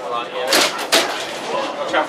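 Inside a vintage double-decker bus on the move: the engine hums steadily while the bodywork gives two sharp rattling knocks, about half a second and a second in, the loudest sounds here.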